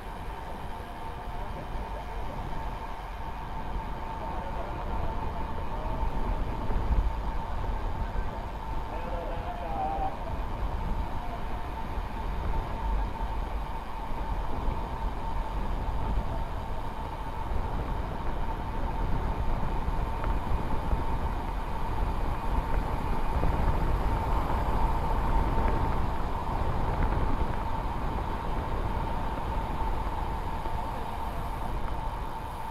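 Wind buffeting the helmet-mounted microphone and road-bike tyres rolling on asphalt during a downhill descent, with a thin steady whine running through it.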